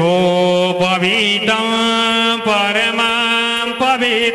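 A voice chanting Hindu ritual mantras in long, drawn-out notes, with a few short breaks between phrases.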